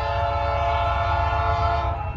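Norfolk Southern freight locomotive's air horn sounding one long, steady chord of several tones from down the line, cutting off just before the end, over a low rumble.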